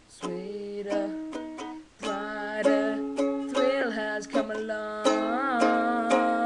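Acoustic string instrument strumming chords in a steady run of strums, with a brief drop in loudness about two seconds in.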